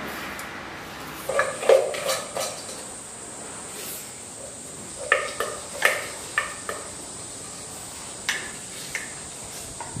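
Spoon and chopsticks clinking and scraping against a metal pot and metal bowls while people eat. The clicks come in two quick clusters, about a second in and about five seconds in, with a couple of single clicks near the end.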